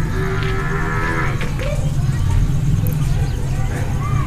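Cattle lowing: one steady call about a second long at the start, over a steady low rumble.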